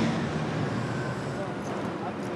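Steady ambient background noise: a low, even hum and hiss with nothing standing out.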